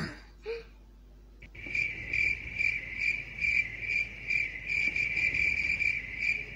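Cricket chirping, a steady high chirp repeating about two to three times a second, starting about a second and a half in. In this cartoon it is a dubbed sound effect.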